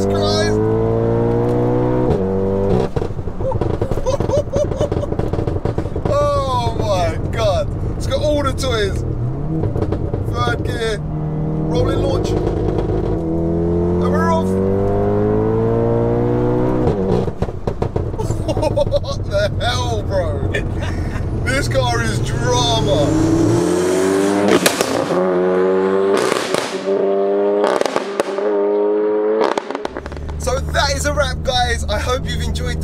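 Heavily tuned, big-turbo 2.0-litre four-cylinder VW Golf R engine under full throttle from a rolling launch on its anti-lag map. The revs climb again and again through quick DSG gear changes, with sharp pops and crackles between the pulls. The deep bottom of the sound falls away for the last several seconds.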